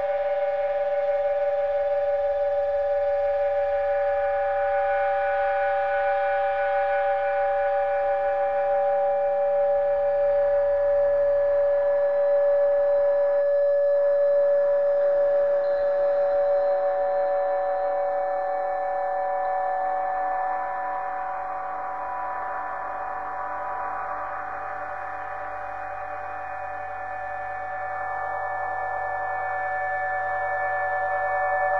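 Experimental drone music: several steady, sustained tones held together with no beat. The sound thins and grows a little quieter past the middle, then swells again near the end.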